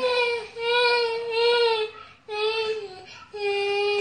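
A high-pitched voice singing long, drawn-out notes in three phrases, the first about two seconds long, with short breaks between.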